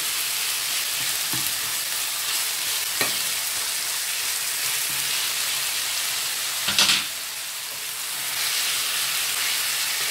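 Minced lamb sizzling steadily as it fries in a pan, with a faint click about three seconds in and a loud sharp clatter of a utensil against the pan just before the seven-second mark.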